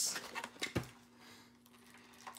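Hands handling a toy's cardboard and plastic packaging: a brief rustle at the start and a single knock about three-quarters of a second in, then a faint steady hum.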